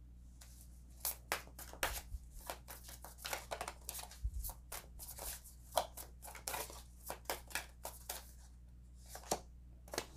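Tarot deck being shuffled by hand: a quick, irregular run of soft card flicks and slaps that starts about a second in and stops shortly before the end.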